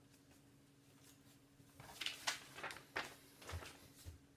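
A sheet of paper being pulled free of painter's tape and lifted off a board: a run of short rustles and crackles starting about halfway in, over a faint steady hum.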